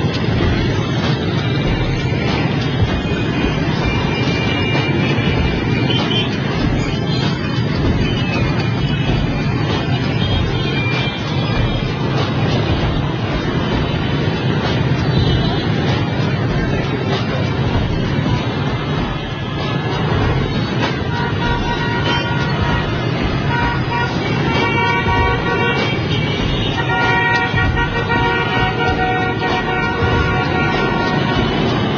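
Dense motorbike traffic running steadily, with repeated horn toots that come more often in the last third.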